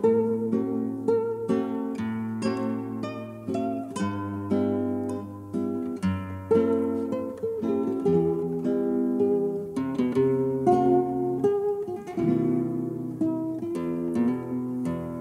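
Acoustic guitar playing the instrumental introduction to a Neapolitan song: a plucked melody of ringing, decaying notes over bass notes.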